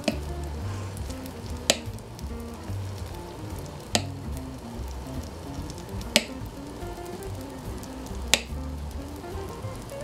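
Æbleskiver batter sizzling in melted butter in the wells of an æbleskiver pan on high heat, with soft background music and four sharp clicks at an even pace, about two seconds apart.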